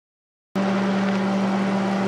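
Elk hamburger and tomato sauce sizzling in a frying pan: a steady hiss with a steady low hum beneath it, starting abruptly about half a second in.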